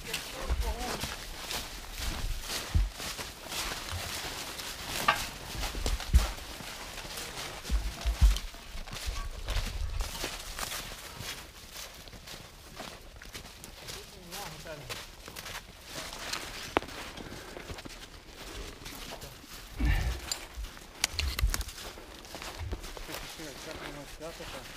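Footsteps crunching irregularly over thin snow and dry leaves, with clothing rustling and several low thumps on the microphone. Faint voices are heard in the background.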